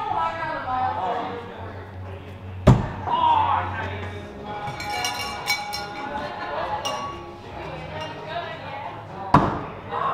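Two thrown axes striking the wooden target board, each a single sharp thud, about six and a half seconds apart, over background music and voices.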